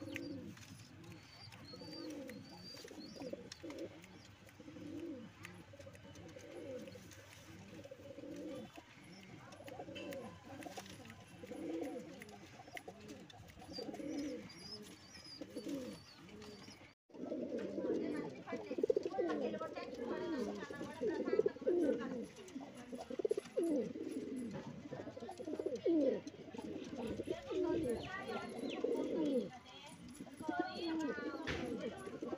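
Andhra high-flyer pigeons cooing over and over. The cooing breaks off for a moment about halfway through and comes back louder and busier.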